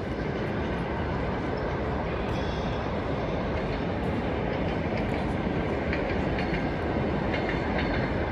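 Steady rumbling noise that holds an even level throughout, with a few faint light clicks near the end.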